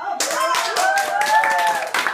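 A small audience clapping, starting just after the music stops, with voices calling out over the applause.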